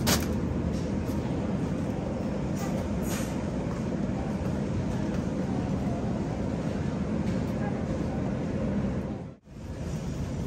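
Steady low rumble of a loaded shopping cart rolling across a store floor, with a brief sharp rustle-knock at the start as a bag of baby carrots is dropped into the cart. The sound cuts out briefly near the end.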